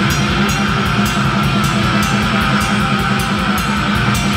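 Live heavy metal band playing: distorted electric guitars over drums with a fast, even low-end pulse, loud and unbroken throughout.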